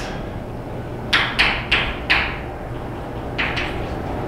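Chalk writing on a blackboard: four short, sharp strokes and taps between about one and two seconds in, and two more near the end, over a steady low room hum.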